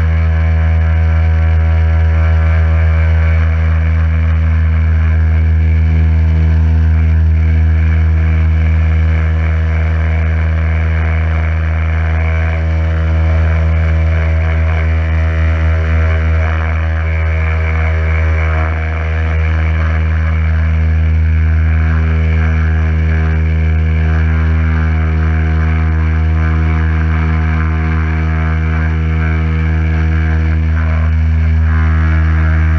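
Electric pressure washer running, its motor and pump giving a steady low hum with a hiss of water spray from the lance as it washes a car's bodywork. The level dips briefly about two-thirds of the way through.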